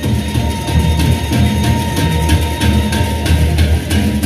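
Lombok gendang beleq ensemble playing: the big barrel drums beat steadily beneath a rapid, even stream of clashing hand cymbals (ceng-ceng), with a steady high tone sounding throughout.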